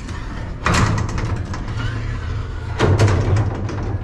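Steel electrical cabinet door being opened, with two bursts of rattling and scraping, about a second in and near three seconds, over a steady low hum.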